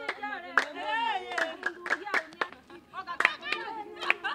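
Several voices singing or chanting, their pitch sliding up and down, over sharp, uneven hand claps.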